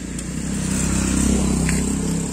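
A motor vehicle's engine running nearby, a low rumble that swells over the first second or so and then eases slightly.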